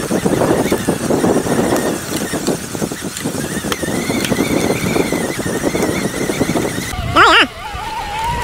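Mountain bike rolling down a rough dirt trail, heard from a camera mounted on the handlebar: a continuous rattle and crunch of the tyres and bike over the bumps. About seven seconds in there is a brief wavering vocal cry.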